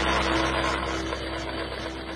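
Homemade flat-die pellet machine running: a steady machine hum under a dense rushing, grinding noise of sawdust being churned over the die.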